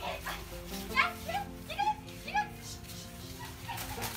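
A toy poodle barking about four times in quick succession, over background music.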